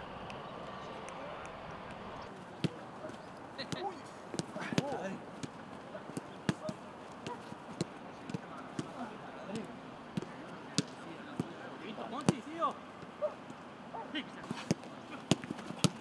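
A football being kicked back and forth in a quick passing drill: sharp, irregular thuds, roughly one or two a second. A few short shouts from players come in between.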